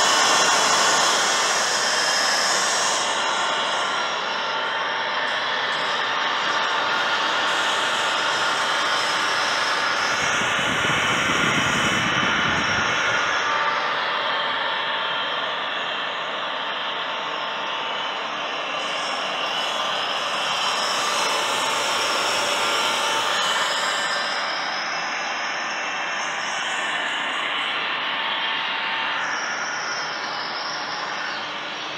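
A 1960s Marelli three-phase 400 V induction motor running free with nothing on its shaft: a steady whir with a constant whine. A low rumble joins in for a few seconds about ten seconds in.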